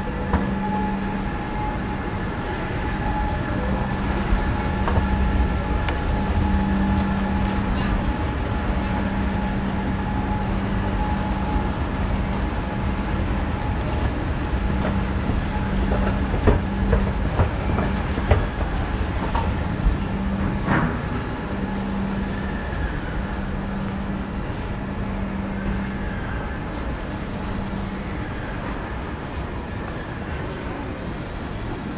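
Escalator machinery running with a steady rumbling hum while it is ridden down, amid shopping-mall crowd chatter. A few sharp clicks come around the middle.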